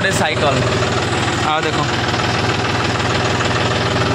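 John Deere tractor's diesel engine idling steadily, heard from the driver's seat.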